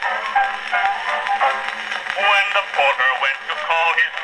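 A 1901 Edison Concert wax cylinder playing on an 1899 Edison Concert Phonograph through its horn: a male voice singing a comic song with band accompaniment. The acoustic recording sounds thin, with little bass.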